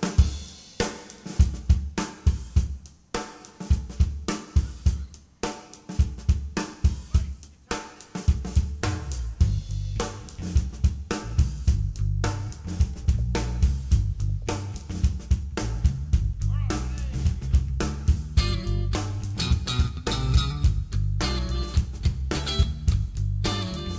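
A rock band's drum kit plays an opening groove of kick, snare and hi-hat hits on its own. About eight seconds in, a steady low bass line joins under the drums.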